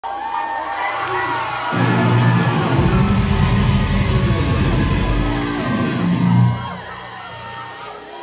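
Live metal band playing loud, heavy chords with drums for a few seconds, then stopping sharply as the song ends. A crowd cheers and whoops throughout.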